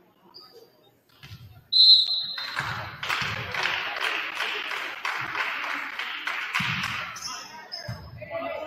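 A referee's whistle gives one short blast about two seconds in, signalling the serve. A gym crowd then makes noise with a quick run of claps, and a few dull volleyball thumps come through as the ball is served and play begins.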